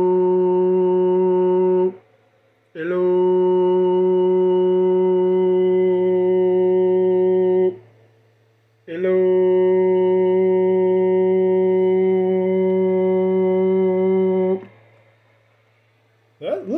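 A man's voice holding a long, steady note into a CB radio microphone three times. The first ends about two seconds in, the next lasts about five seconds and the last about six, with short pauses between them. The drawn-out 'hello' keeps the transmitter fully modulated so the meters can show its peak power.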